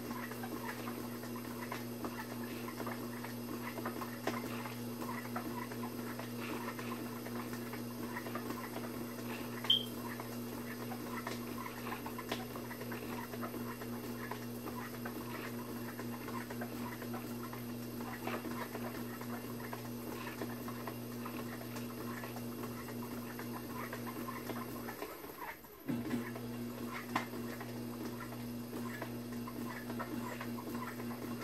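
Electric pottery wheel running with a steady motor hum while hands work the wet clay of a spinning platter, giving faint irregular squelches and scrapes. The hum cuts out for under a second near the end and comes back.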